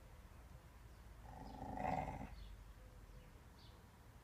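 Dog growling once with a rubber Kong toy held in its mouth, the growl swelling and fading over about a second midway through.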